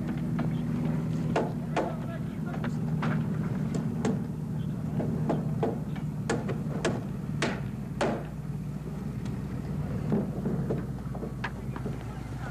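Carpentry hammers striking nails and lumber in irregular sharp knocks, sometimes two or three a second, over a steady low hum.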